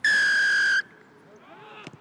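Rugby referee's whistle, one steady high blast lasting under a second, signalling the kick-off. Faint shouts follow, with a short thud near the end as the ball is kicked.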